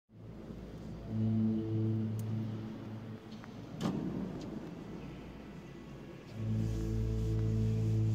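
A low, steady musical note with overtones, held for about two seconds and sounded again from about six seconds in, with a single sharp knock that rings briefly about four seconds in.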